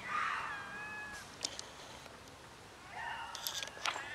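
Stray cat meowing twice: one drawn-out meow about a second long at the start, then a shorter one near the end.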